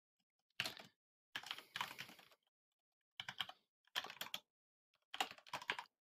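Typing on a computer keyboard: quiet keystrokes in about five short bursts with brief pauses between them.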